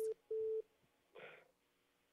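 A steady single-pitch telephone-line beep, ending just after the start and followed by a second short beep, then a faint sound from the caller over the narrow phone line about a second in.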